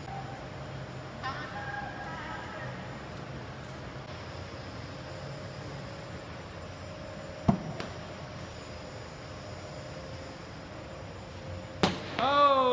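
A basketball thrown in a long shot strikes the hoop with a sharp bang just before the end, missing narrowly, after another single sharp bang with a short ringing tail about two thirds of the way through. A steady low hum runs underneath in the large echoing hall.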